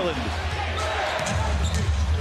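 Basketball dribbled on a hardwood arena court, its low thumps over steady arena crowd noise.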